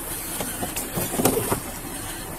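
Rustling and handling noise close to a body-worn camera as an officer goes through a man's pockets, over a steady background hum with a few faint ticks.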